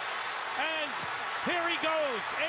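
Football TV broadcast audio: a play-by-play announcer calling a long touchdown run, his voice rising and falling over steady stadium crowd noise.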